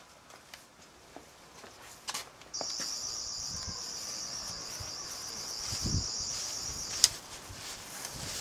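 Toy sonic screwdriver buzzing: a steady, high-pitched warbling buzz that switches on suddenly and runs for about four and a half seconds, then cuts off with a sharp click.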